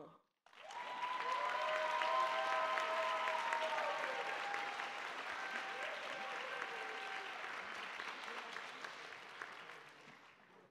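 Auditorium audience applauding for an award recipient. The clapping starts about half a second in, peaks after a couple of seconds and slowly dies away, with a few long cheers from the crowd over it.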